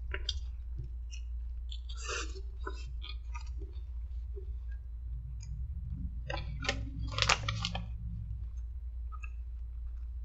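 A person biting into and chewing a soft chicken sandwich close to the microphone: scattered wet mouth clicks and crackles, with a louder run of them about seven seconds in. A steady low hum lies underneath.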